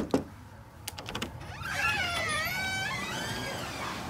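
Door latch and knob clicking twice, a few lighter clicks, then the old wooden door's hinges creaking in a long, wavering squeal that rises and falls in pitch as the door swings open.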